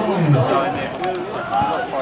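Several people talking at once, their voices overlapping, with no single clear speaker.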